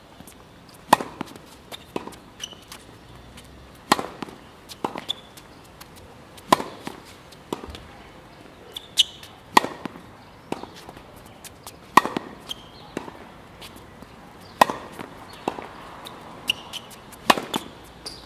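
Tennis balls struck by a racket and bouncing on a hard court: a sharp, loud hit roughly every two and a half seconds, each followed about a second later by a quieter pop.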